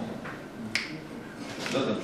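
A man's voice at a table microphone, low and indistinct, with one sharp click a little under a second in.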